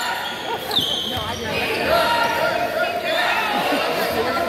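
Indoor basketball game sounds: one short, high squeak about a second in, followed by voices of players and spectators talking over one another.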